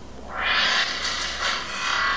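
Movie trailer soundtrack playing: a noisy rushing sound-effect swell that rises about half a second in, ebbs and swells again near the end, with faint music underneath.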